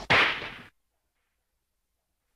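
The last sound of a hip hop track: a brief click, then a short swishing noise that fades within about half a second. Then the audio cuts off to dead silence.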